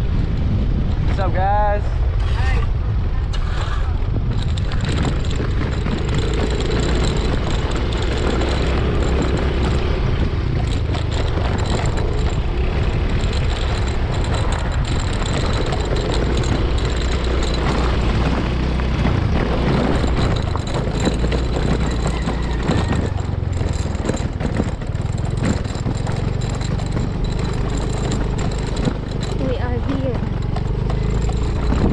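Small motorcycle ridden at road speed, its engine and the wind on the microphone making a steady low rumble. A brief wavering call sounds near the start.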